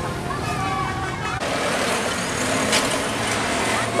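Road traffic noise from passing tour buses, a truck and motorcycles, with people talking nearby. The sound changes abruptly about a second and a half in.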